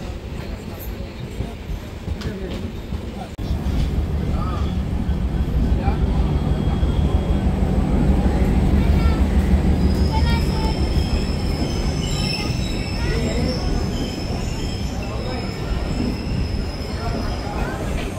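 Passenger train running on the rails, heard from aboard the coach. The low rumble of the wheels steps up suddenly about three seconds in. From about halfway through, a steady high-pitched wheel squeal holds for several seconds.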